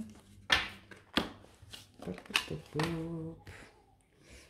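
Cards being picked up and gathered off a tabletop: a few quick slaps and swishes of card against card and table, the sharpest about half a second and a second in. Near the end comes a brief murmur from a voice.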